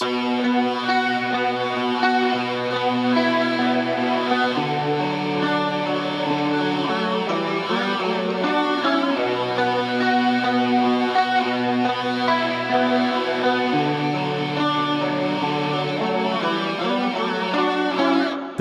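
Clean electric guitar parts, processed with EZmix 3 chains that add ambience, playing on their own without drums or bass: sustained, ringing notes that change every second or two.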